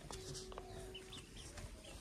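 Faint clucking of a domestic chicken, with one held note during the first second.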